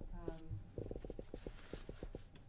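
A woman's voice hesitating mid-question: a short 'um', then a run of quick low pulses at about ten a second, and an intake of breath near the end.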